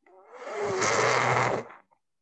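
A child's loud, rough groan close to the microphone, lasting about a second and a half.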